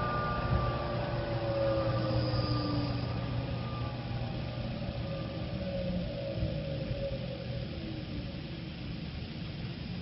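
Electric motor run by an SVX9000 variable frequency drive ramping down after a stop command. Its whine falls slowly in pitch over several seconds and fades, over a steady low hum.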